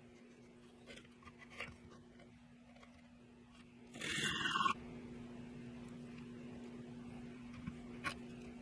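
Stack of rare earth disc magnets rubbed on 240-grit sandpaper to rough them up: a short scraping rasp about halfway through, after a couple of faint clicks. A steady low hum runs underneath.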